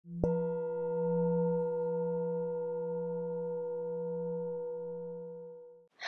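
A single struck bell-like tone that rings on with a long, slowly fading sustain and stops just before the end.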